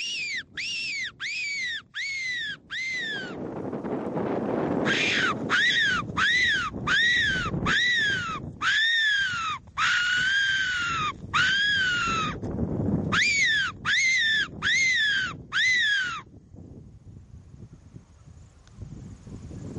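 Hand-blown fox whistle (a predator call) squealing in three runs, about twenty short squeals in all, each rising then falling in pitch, with one held longer in the middle run. It is sounded to keep a fox coming in.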